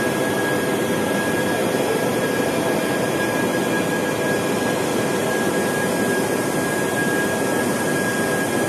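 Tea-processing machinery running steadily on the factory floor: an even, loud whir with a steady high-pitched whine from the motors and fans around the bed of oxidising cut tea.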